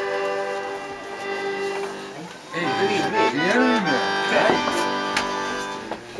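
Accordion playing a sustained chord. From about two and a half seconds in, a man's voice with sliding, rising and falling pitch joins over the accordion.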